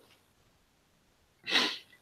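Near silence for about a second and a half, then a man's short intake of breath just before he goes on speaking.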